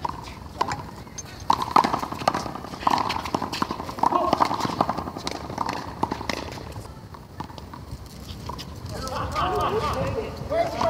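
One-wall handball rally: an irregular run of sharp slaps as the small rubber ball is struck by hand and hits the concrete wall, with players' footsteps on the court. The impacts die away after about six seconds, and voices come in near the end.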